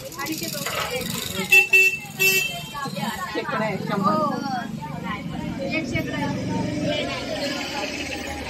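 Busy street-market background of people talking, with a vehicle horn tooting three short times about one and a half to two and a half seconds in. A low rumble of traffic runs through the middle.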